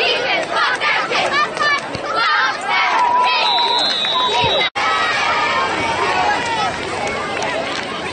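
Sideline crowd of spectators and players shouting and talking over one another, with one steady, high whistle blast of about a second midway through: a referee's whistle blowing the play dead.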